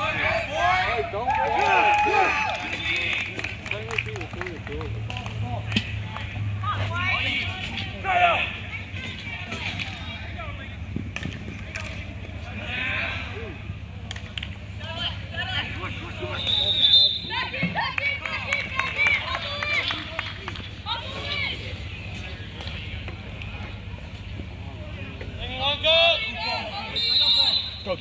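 Indistinct shouting and calling from lacrosse players and coaches during play, with a few short sharp clicks.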